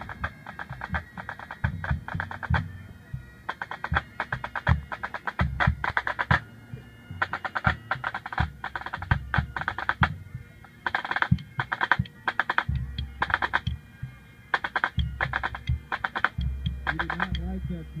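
Pipe band drum corps playing a drum salute: rapid, tightly grouped pipe band snare drum strokes and rolls in bursts with short breaks, over tenor drums and a bass drum beating underneath.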